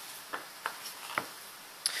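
A few light clicks of handling noise as a wood-mounted rubber stamp is held and moved in the hand: three short clicks in the first second or so, then a fainter, higher tick near the end.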